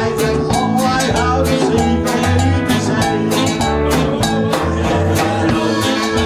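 Live rock-and-roll band playing: drum kit keeping a steady beat under electric guitars, saxophones and bass notes.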